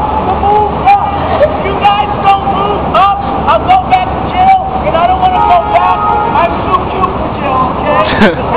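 Busy city street: raised, overlapping voices of people nearby over a steady rumble of traffic, with scattered short sharp clicks.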